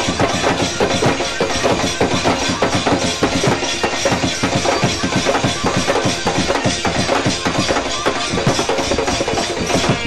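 Instrumental folk music: fast, dense drumming and hand percussion in a steady rhythm, with no singing.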